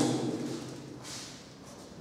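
Quiet pause in a room, with a brief soft rustle about a second in as someone reaches to move a piece on a wall demonstration chessboard.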